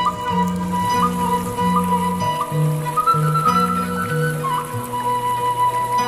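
Background music: a Sundanese suling bamboo flute holds long notes with short upward flicks, over a low accompaniment that changes note about twice a second.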